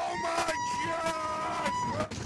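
Riders on a wooden roller coaster screaming as the train drops and swings through a curve: long, held screams, two voices overlapping, ending abruptly near the end.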